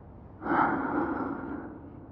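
A person's loud, sharp breath, like a gasp, starting suddenly about half a second in and fading away over about a second.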